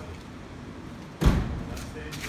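A single heavy thump about a second in, loud and deep, dying away within half a second.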